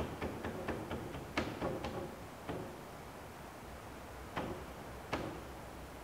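A run of light clicks and a few sharper taps from hand work on a clamped wooden brace as it is adjusted. The clicks come quickly for the first couple of seconds, then there are two single taps near the end.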